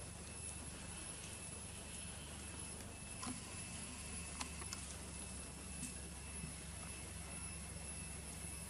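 Quiet outdoor background with a faint steady high whine and low hum, broken by a few light, sharp clicks and taps as macaques pick fruit from a shallow metal tray; the sharpest click comes about four and a half seconds in.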